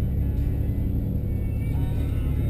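Car interior noise while driving: a steady low rumble of engine and tyres heard inside the cabin.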